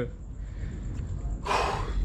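A man takes one loud, breathy gasp lasting about half a second, about a second and a half in, catching his breath while chugging a gallon of milk. Before it there is only a low room rumble.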